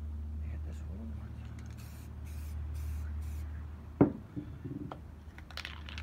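Aerosol spray-paint can giving several short bursts of hiss in quick succession, then a single sharp knock about four seconds in, over a steady low hum.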